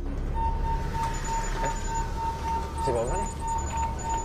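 A high, steady electronic tone comes in shortly after the start over a low, continuous rumble in the film's soundtrack, with a brief voice around three seconds in.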